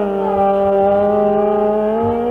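Hindustani classical khayal singing in raag Bihagada: a male voice holds one long, steady note that rises slightly near the end, with no tabla strokes in between.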